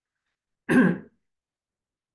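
A person clearing their throat once, a short rasp just under a second in.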